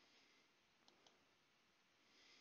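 Near silence: faint hiss with two faint clicks close together about a second in.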